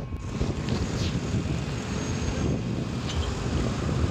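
Steady wind rush on the microphone mixed with the hum of a motorcycle riding along in traffic.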